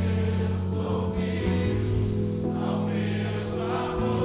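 Slow church worship music: long held chords over a steady bass, with electric guitar and voices singing.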